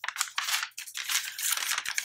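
Sheets of paper rustling and crinkling as they are handled and put down, a busy run of crackles and small taps.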